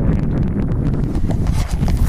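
Wind buffeting the camera's microphone: a steady, loud, low rumble.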